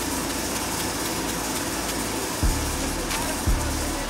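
Steady background hiss with a few soft low thumps about two and a half and three and a half seconds in.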